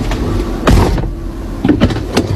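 Car cabin with a steady low engine hum, broken by two short, loud sounds, one about two-thirds of a second in and one near the end.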